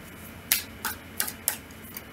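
A deck of oracle cards being shuffled and drawn by hand: about four sharp, separate clicks of card against card, roughly a third of a second apart.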